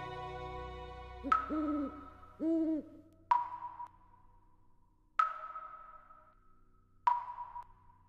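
Soft music fades out, then an owl hoots twice, two short hoots that rise and fall in pitch. Four gentle chime notes ring out about two seconds apart, each one decaying slowly.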